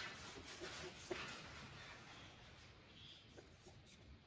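Faint rubbing of a cloth rag wiping the wall of a cylinder bore in a Mercedes M117 engine block, with a few small ticks.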